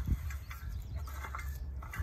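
A garden rake scraping faintly through a bed of wood chip mulch, parting the chips to reach the soil beneath, over a low steady rumble.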